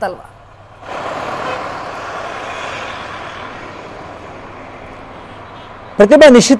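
Road traffic noise picked up by an open outdoor microphone, cutting in suddenly about a second in and slowly fading away.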